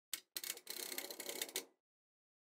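Icom IC-7300's internal automatic antenna tuner at work: a single click, then a little over a second of rapid relay clicking that stops as the tuner finds a match.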